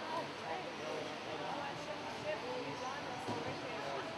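Indistinct chatter of several people talking at once, no words clear.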